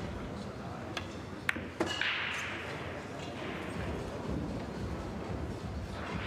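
Pool balls clicking on a pool table: a faint click about a second in, then two sharp clacks close together about a second and a half in, as the cue strikes the cue ball and the balls collide. A low murmur of voices runs underneath.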